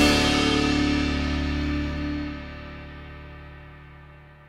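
Band's final chord ringing out after the last drum and cymbal hit and slowly dying away, the cymbal wash fading first. The sound drops noticeably a little over two seconds in and keeps fading.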